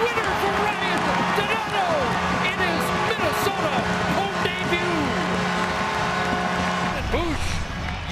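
Hockey arena crowd cheering and whooping for an overtime winning goal, with the arena's goal horn sounding one steady low tone that stops about seven seconds in.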